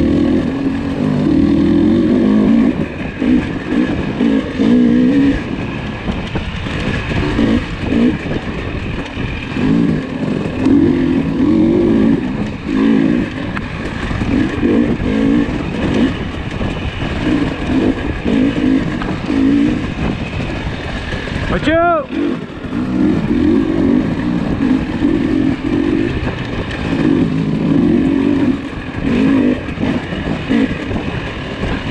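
KTM 300 XC two-stroke dirt bike engine being ridden hard on a tight woods trail, its revs rising and falling every second or two as the throttle is opened and shut. A brief, sharp falling chirp cuts in about three-quarters of the way through.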